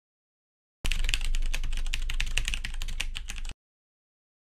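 Rapid typing on a computer keyboard: a fast, irregular run of key clicks starting about a second in and stopping abruptly.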